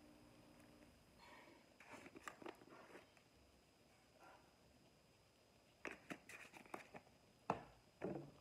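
Faint rustling and clicking of spice containers being handled and shaken over the bowl. The sounds come in two clusters, about two seconds in and again about six seconds in, with a sharper click near the end.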